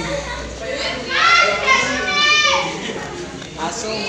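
Children's voices: high-pitched calls and chatter, loudest from about one to two and a half seconds in.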